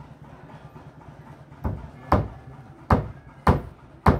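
A series of sharp, loud thuds or knocks starting about a second and a half in, four of them roughly half a second to a second apart, over a faint low steady background.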